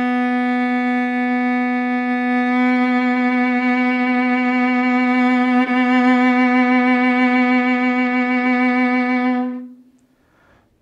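One long note on a bowed string instrument, held straight at first. A couple of seconds in, a vibrato begins that rocks the pitch only above the note, so it sounds sharp. There is a brief catch a little past halfway, and the note fades out near the end.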